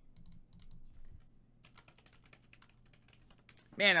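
Computer keyboard typing: a run of quick, light key clicks.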